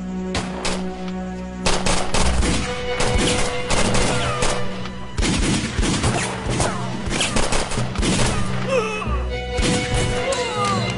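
Rapid gunfire, many shots in quick succession, a few scattered ones at first and then a dense volley from about two seconds in. A dramatic music score with a steady held note runs underneath.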